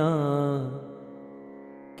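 A man chanting a Sanskrit verse to a melody: the held last note of the line dips in pitch and fades out about a second in, leaving a quieter, steady sustained drone under the pause.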